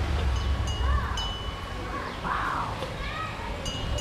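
Small metal temple bells struck a few times, each strike leaving a clear high ringing tone that hangs on before fading.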